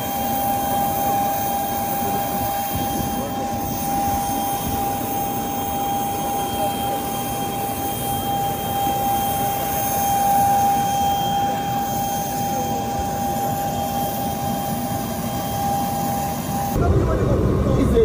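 Steady whine of a jet aircraft engine running on the apron, a constant high tone over rushing noise. Near the end it cuts off abruptly and gives way to a louder low rumble.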